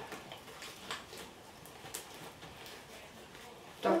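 Faint, scattered sticky clicks and soft squelches of homemade slime being kneaded and stretched by hand.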